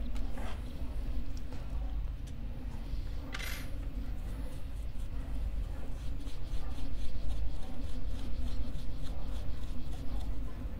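Bristle brush scrubbing coffee grounds out of a Turin DF83 grinder's 83 mm flat burrs and burr chamber, in quick repeated scratchy strokes that come faster and denser in the second half. A short hiss comes about three and a half seconds in.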